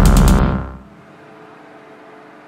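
Electronic music with a heavy, deep bass synth that drops away about half a second in, fading out within the first second. A faint steady tone lingers after it.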